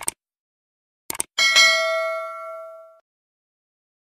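Subscribe-button sound effect: a short click, then a quick double click about a second in, followed by a notification bell ding that rings out and fades over about a second and a half.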